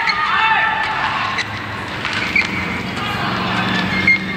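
Badminton rally: a few sharp racket hits on the shuttlecock about a second apart, over steady arena noise.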